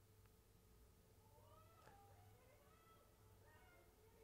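Near silence, with faint high-pitched calls from a distance starting about a second in: players shouting on the field.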